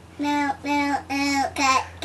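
A young girl singing a string of about five short syllables, mostly on one steady note.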